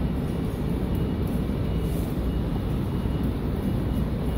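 Steady low rumble of outdoor background noise, even throughout, with no distinct events standing out.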